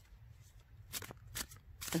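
Three soft, sharp clicks about half a second apart in the second half, over a faint low rumble.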